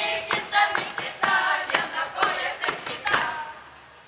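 A group of voices singing or chanting a Lithuanian folk song in a steady rhythm, with sharp knocks about twice a second; the voices and knocks stop shortly before the end.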